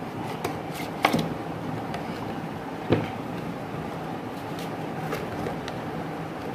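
Hands unpacking a doorbell kit's cardboard and plastic packaging: a couple of sharp clicks, about a second in and again about three seconds in, over steady background noise.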